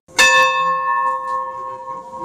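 A church bell struck once, then ringing on with a slow fade.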